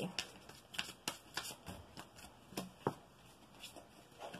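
A deck of oracle cards being shuffled and handled by hand: a series of faint, irregular crisp card clicks and snaps.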